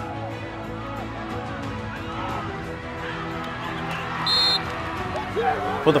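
Background music with long held notes, and about four seconds in a single short, high blast of a referee's whistle.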